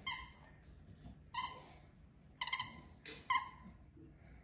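Dog's squeaky toy squeaking in short, sharp bursts as a dog chews it: five or six squeaks, the last few coming in quick pairs.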